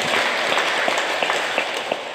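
Applause: a dense, steady patter of hand clapping that dies away near the end.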